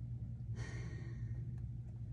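A woman's soft breathy exhale, like a sigh, about half a second in. A steady low hum runs beneath it.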